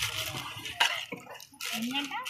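A metal ladle scooping biryani rice out of a large aluminium pot into a crinkling foil takeaway bag: rustling and scraping, with a sharp knock a little under halfway through and another shortly after.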